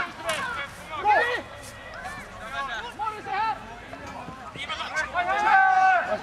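Men's voices calling and shouting out on a football pitch in short bursts, with one long held shout near the end.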